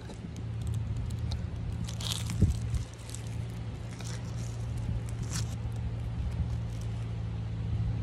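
Thumb rubbing across a dried sunflower head, loosening the seeds with scattered scratchy crackles, over a steady low drone.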